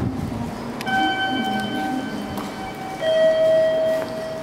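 A two-note electronic chime: a higher tone starts sharply about a second in and is held about two seconds, then a lower, louder tone sounds about three seconds in.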